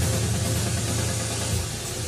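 Uplifting trance track in a breakdown: the kick drum drops out, leaving a steady low bass note under held synth tones.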